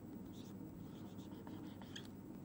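Marker pen writing on a whiteboard: a few faint, short scratching strokes over a low, steady room hum.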